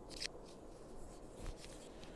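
Faint handling of a red plastic folding fork-and-spoon utensil (Humangear GoBites Duo): light rubbing and a brief plastic scrape about a quarter second in, with a smaller one near the middle.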